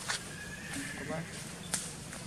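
Long-tailed macaques making a short, rising, squeaky call, with two sharp clicks: one just after the start and one near the end.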